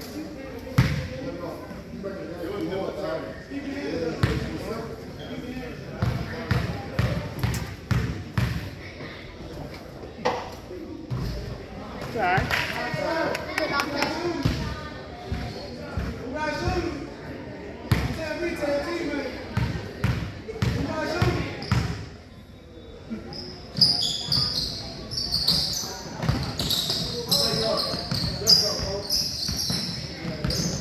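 Basketball bouncing on a hardwood gym floor, echoing in a large hall, over indistinct chatter of players and spectators. A run of high-pitched squeaks comes in the last few seconds as play gets going.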